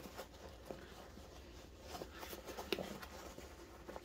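Faint rustling and scraping of nylon webbing being pulled through the tight MOLLE loops of a backpack, with a few small clicks.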